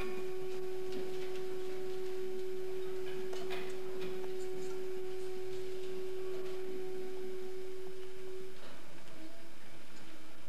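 A single held pure tone in the stage music, steady for about eight and a half seconds before it fades out, over an even background hiss.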